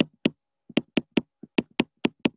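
Stylus tip tapping and clicking on a tablet's glass screen during handwriting, about a dozen short, sharp taps at an uneven pace.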